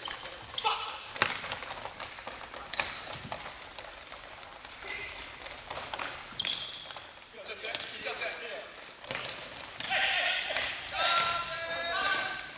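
Futsal ball being kicked and bouncing on a wooden gym floor, with indoor-shoe squeaks and players calling out. The sharpest knocks come in the first two seconds, and the calls are loudest near the end.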